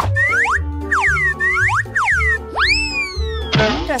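Upbeat children's background music with a string of cartoon boing sound effects: quick curved pitch glides about every half second, then one longer glide that rises and falls, and a short burst of noise just before the end.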